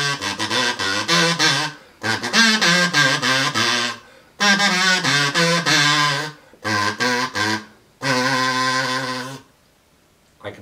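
A kazoo being hummed into, its wax paper membrane buzzing as it plays a short tune in several phrases with brief pauses between them, ending on one long held note.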